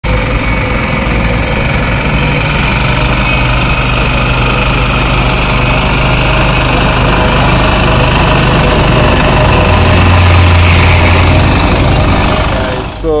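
Walk-behind double-drum vibratory roller running close by, its small engine and vibrating steel drums making a loud, steady rattling drone as it compacts the soil base of a new sidewalk. It grows a little louder near the end.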